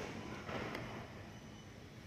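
Faint background noise of a large warehouse store, with a light click at the start and a fainter one under a second in.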